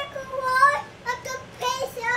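Young children singing in high voices in short phrases, with one longer held note about half a second in.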